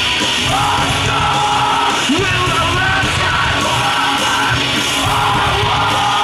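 Live metalcore band playing at full volume: distorted electric guitars, bass and drums under a shouted lead vocal.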